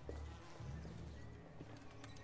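Faint low background score playing from a TV drama episode, with sustained bass notes that swell and fade a few times.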